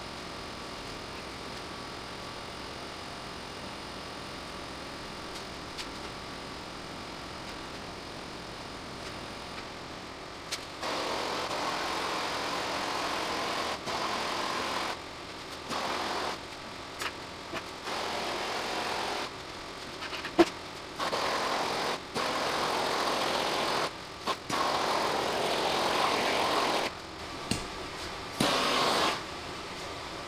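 Handheld gas torch run in repeated bursts of one to three seconds with short gaps, passed over freshly poured clear epoxy to knock down surface bubbles. For the first ten seconds only a steady low background hum is heard.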